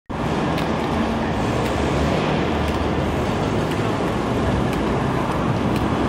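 Steady city street traffic noise, with faint light ticks about once a second.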